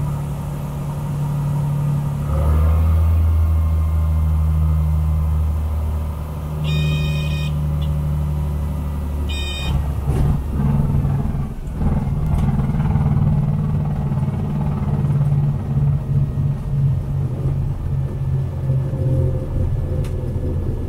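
Cessna 182T engine and propeller running at low power through the landing, with two short high beeps, at about 7 and 9.5 seconds in. From about 10 seconds the sound turns into a rougher, uneven rumble with a few knocks as the wheels roll on the runway.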